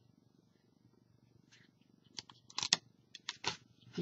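Plastic-wrapped craft paper and packaging being handled, with a few short sharp crackles and clicks in the second half over a faint low background.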